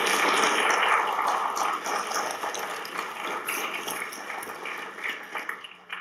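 Audience applauding, loudest at the start and slowly dying away near the end.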